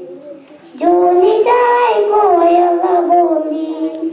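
A young girl singing solo: a short breath about the first second in, then a line of long held, slightly wavering notes.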